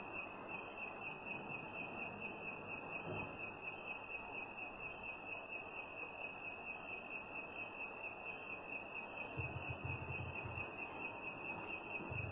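A steady high-pitched tone over background hiss, with a short low hum about nine and a half seconds in.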